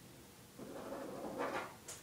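Soft rustling and shuffling of a person moving about, starting about half a second in, with a couple of light clicks near the end.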